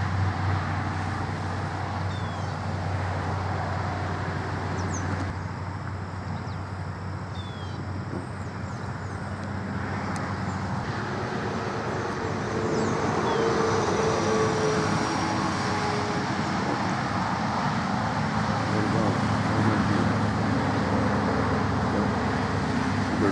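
Steady vehicle and road-traffic noise: a low engine hum under a rushing haze, growing a little louder about halfway through.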